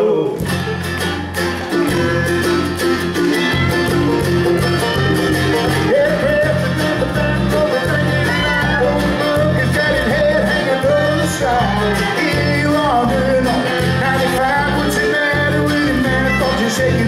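Live bluegrass band of fiddle, mandolin, acoustic guitar, banjo and bass guitar playing. The bass comes in just after the start, and the full band carries on with no words sung.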